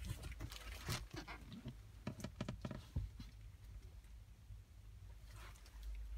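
Scattered light clicks and knocks, closest together in the first three seconds, over a steady low hum.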